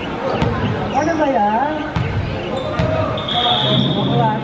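A volleyball thudding on a wooden sports-hall floor a few times, with players shouting and the sound echoing in the hall. A brief high squeak comes near the end.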